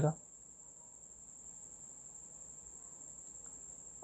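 Faint, steady, high-pitched whine over a low background hiss.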